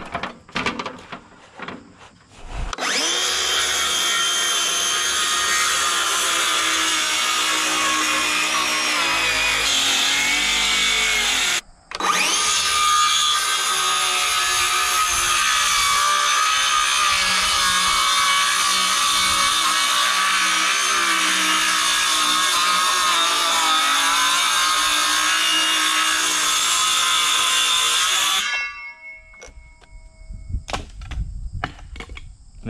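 DeWalt cordless circular saw cutting along the edge of a rough-sawn wooden siding board. A few light knocks come first. The saw then runs steadily for about nine seconds, stops for a moment, and cuts again for about sixteen seconds before stopping.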